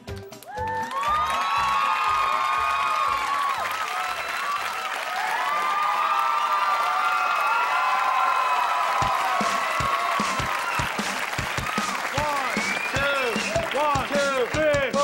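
Studio audience applauding and cheering, with many whoops and shouts over the clapping.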